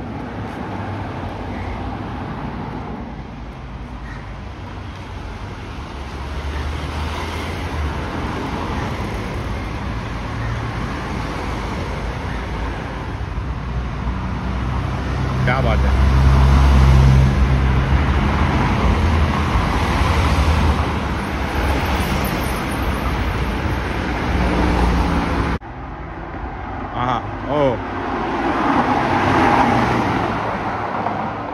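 Cars driving slowly past one after another, engines running, with people talking in the background. The deepest, loudest engine sound comes as a car passes about halfway through, and near the end the sound changes abruptly to a closer car passing.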